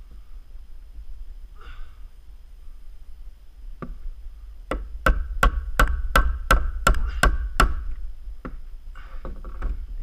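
Claw hammer driving a nail into a two-by-four. There is a single blow about four seconds in, then a quick even run of about nine blows, roughly three a second, lasting about three seconds.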